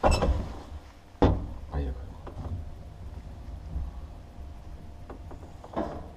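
Old cage elevator car in motion: a steady low rumble, with two sharp clunks in the first second or so and another near the end, and a faint steady hum joining about two and a half seconds in.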